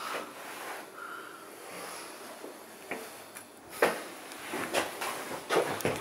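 Quiet room noise, then a sharp knock just before four seconds in and a few more short knocks and rustles near the end: things being handled close to the microphone.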